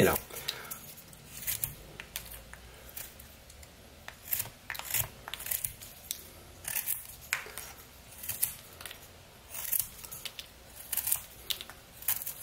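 Pocket knife blade shaving slivers off a block of Eastern white pine: short, crisp slicing cuts in irregular runs of a few strokes, with pauses between runs.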